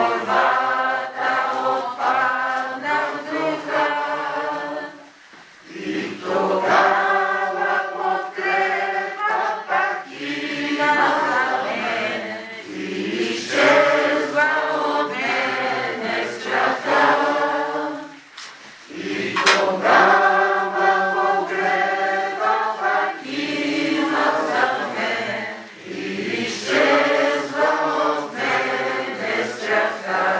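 A group of voices singing a hymn in long phrases, with short breaks between them.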